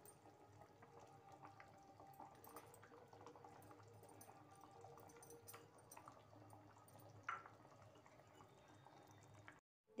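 Faint bubbling of curry simmering in a kadai, with scattered small ticks and a brief louder sound about seven seconds in; it cuts off just before the end.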